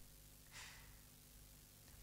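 Near silence under a faint low steady hum, with a soft breath from the narrator about half a second in.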